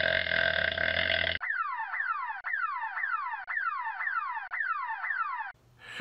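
Comedy sound effects: a long, buzzing fart noise that stops abruptly about a second and a half in, then a falling whistle repeated four times, about once a second, stopping shortly before the end.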